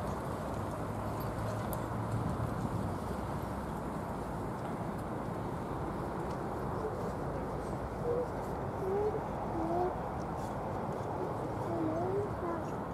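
Steady outdoor background noise, with a few short pitched calls in the last few seconds.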